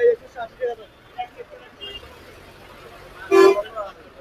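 A vehicle horn honks once, briefly and loudly, about three and a half seconds in, over scattered voices of street-market chatter.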